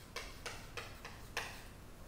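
Chalk on a chalkboard: four short taps and scratches spread across two seconds as a word is written.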